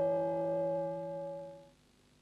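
An electronic musical sting: a single sustained chord of steady tones, already ringing, that slowly decays and fades out about one and a half seconds in, marking the close of a TV news broadcast.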